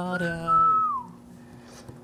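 The closing held note of a sung news-show theme song, which falls away about a second in and leaves a faint sustained low tone from the backing music.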